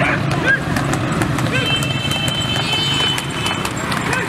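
A racing tanga horse's hooves clip-clopping on the paved road, mixed with the running engines of the escorting motorcycles and men shouting; a steady high tone sounds from about one and a half seconds to nearly four seconds in.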